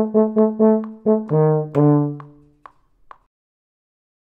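Euphonium ensemble playing quick repeated chords, then a lower chord that is held and cut off about two seconds in. Two short notes follow near the three-second mark, then the music stops.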